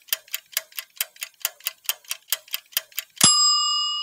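Countdown sound effect: a clock ticking fast and evenly, about five ticks a second. About three seconds in it ends on a single loud bell ding that rings on and slowly fades.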